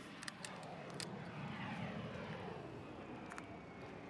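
Faint sound of a distant aircraft passing by, its engine pitch sliding down over a couple of seconds, with a few light clicks.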